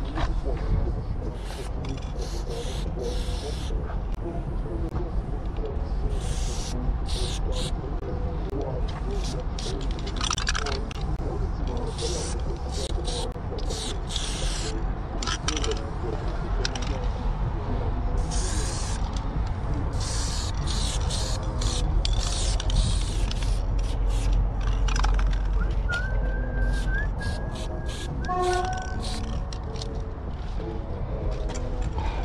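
Aerosol spray paint can hissing in repeated bursts as paint is sprayed onto a concrete wall, some bursts short and some about a second long, over a steady low rumble.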